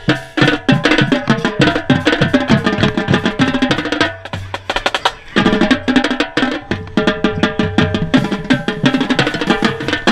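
Marching tenor drums (quads) with Evans heads struck rapidly with sticks right at the microphone, over a marching band's wind instruments playing a tune. The playing drops back briefly about four seconds in, then comes back in full.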